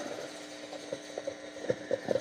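Quiet room tone in a church: a steady low hum with a few faint clicks in the second half.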